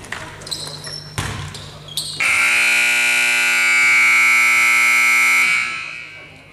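Gymnasium scoreboard buzzer sounding one loud, steady tone for about three seconds, then ringing on briefly in the hall after it cuts off. Before it, a basketball thuds on the hardwood floor a couple of times and sneakers squeak.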